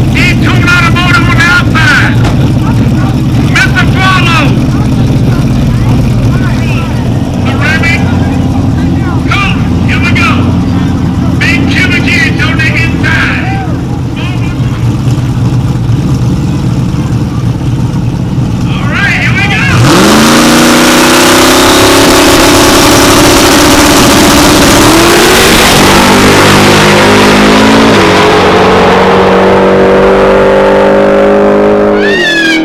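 Turbocharged Ford Mustang drag car idling with voices around it, then, about two-thirds of the way in, a sudden very loud launch down the drag strip, the engine note climbing and stepping up through the gears.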